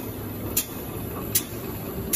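Single-sided lapping machine running with a steady mechanical hum, while a sharp high click repeats about every 0.8 seconds, twice here.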